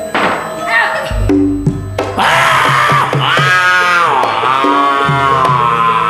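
Javanese gamelan accompaniment: metallophones playing steady repeated notes, with a deep low stroke about a second in. From about two seconds in a high voice rises over it in long, wavering tones.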